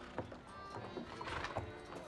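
Hooves of two carriage horses clip-clopping on wooden boards, about three strikes a second, with a horse neighing briefly in the middle, over background music.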